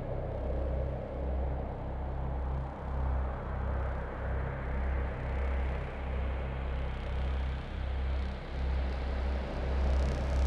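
Ambient intro of a melodic death metal music video: a low throbbing drone that pulses a little more than once a second, under a rushing noise that slowly grows brighter.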